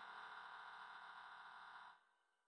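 Near silence: a faint lingering resonance from the preceding percussion and electronics slowly dies away, then cuts to dead silence just before the end.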